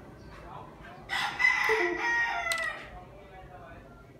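A rooster-like crow: one long call lasting about a second and a half, held on a high note and then falling away, with a short sharp click near its end.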